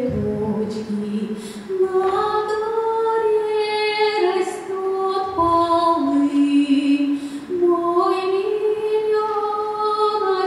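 A woman singing a Russian folk song solo and unaccompanied, in long held notes that step up and down between pitches.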